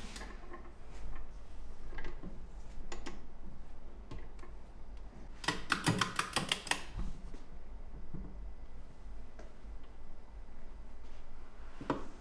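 Ratchet of a torque wrench clicking on a duralumin stud clamped in a bench vise. There are a few single clicks, then a quick run of about eight clicks a little before halfway, as the wrench is worked toward a 14 kgf·m setting.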